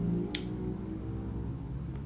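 Soft background music of low, held droning notes, with a single short sharp click about a third of a second in.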